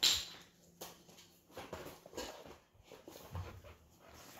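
A short sharp noise at the start, then a dog faintly whimpering on and off.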